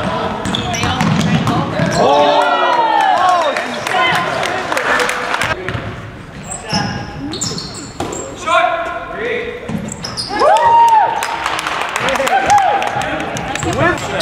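Basketball dribbled on a hardwood gym floor, with sneakers squeaking in short arching chirps several times and voices echoing in the hall.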